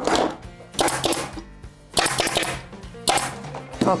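Upholstery fabric rustling and rubbing as it is tugged down over a chair back by hand, in four short strokes about a second apart.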